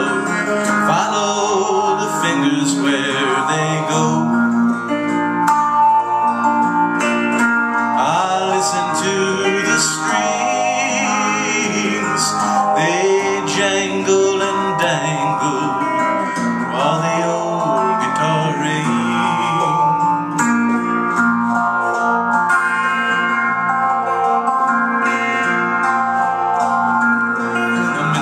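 Instrumental break of a folk song played on an electric guitar: melodic lines with some sliding or bent notes over a steady accompaniment.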